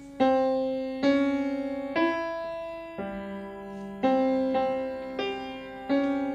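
Grand piano played slowly, with notes struck about once a second, each left to ring and die away before the next.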